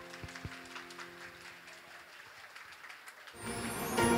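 The last piano notes of a dance piece die away under light, scattered audience applause; about three seconds in, a loud swell of new music comes in.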